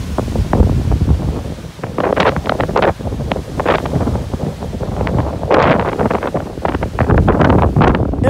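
Strong gusting wind buffeting the phone's microphone: a loud, low rumble that surges and drops irregularly with each gust.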